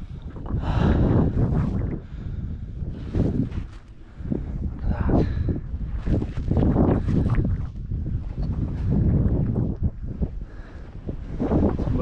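Wind buffeting the microphone, a low rumble that rises and falls in gusts every second or two.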